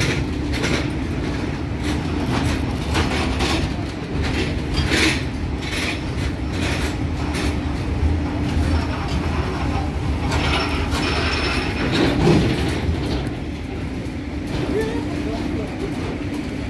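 A train rolling past, with a steady low rumble and hum and repeated clacks of wheels over the rails.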